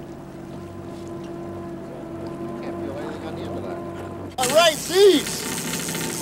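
Steady drone of a boat motor running at trolling speed, one unchanging hum. About four seconds in it cuts abruptly to louder, hissy open-deck sound with men's voices.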